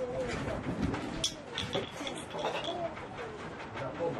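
Outdoor ambience with birds calling, including dove-like cooing, over faint background voices and small knocks.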